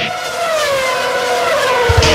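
A race-car engine sound effect, its note falling steadily in pitch over about two seconds, while the drumbeat of the music drops out.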